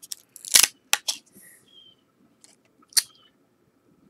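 Stiff cardboard trading cards being handled and flipped by hand, giving a few sharp clicks and snaps; the loudest come about half a second in and about three seconds in.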